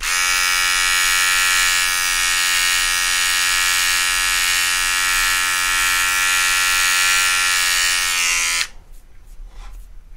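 Corded electric hair clipper buzzing steadily while it trims the hair above the ear. It switches on at once and cuts off near the end, its pitch dipping briefly as it winds down.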